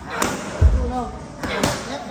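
Pad work: a boy's gloves and knee striking a trainer's Thai pads, giving sharp smacks about a quarter second in and twice in quick succession near the end, with a heavy low thud about half a second in.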